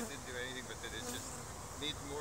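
Honeybees buzzing around a hive, a low, steady hum.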